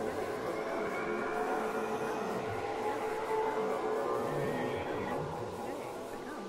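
Beatless breakdown in a hardtek DJ mix: held and slowly gliding synth tones and a swirling texture, with the kick drum and bass dropped out.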